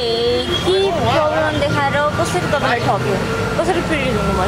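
A woman talking while crying, her voice wavering and breaking in pitch, over a steady low background rumble.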